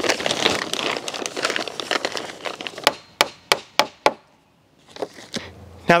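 Thick plastic sheeting crinkling and rustling as it is folded and tucked by hand, followed by a run of five sharp clicks about a third of a second apart.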